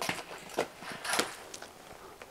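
Handling noise as a boxed pleated furnace filter is picked up: faint rustling with a few soft knocks about half a second apart.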